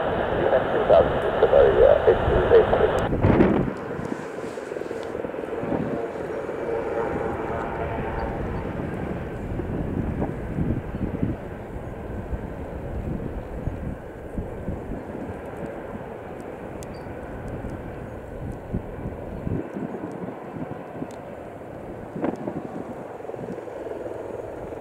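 Jet engine noise of a Cargolux Boeing 747-8 freighter climbing away after takeoff, a steady rumble that slowly fades as the aircraft recedes. For the first three seconds a radio voice from air traffic control plays over it, thin and cut off above the middle of the range.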